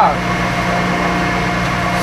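Milling machine running with a steady, even hum while its dovetail cutter works through weld metal on the tool block.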